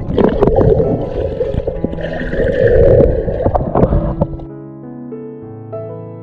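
Rushing, crackling water noise on an underwater camera as a swimmer moves through a pool, over background music. About four and a half seconds in the water noise stops, leaving only soft keyboard music.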